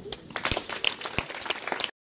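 Audience applause starting: a few scattered claps that quickly thicken into steady clapping, which cuts off abruptly near the end.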